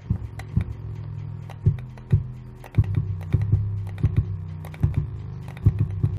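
Deep bass notes tapped out by hand in an uneven, halting rhythm, each starting with a sharp click, with light key or pad taps between them, as a beat is built.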